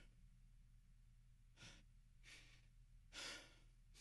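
Near silence with a faint steady low hum, broken by three soft breaths close to the microphone, the third the loudest.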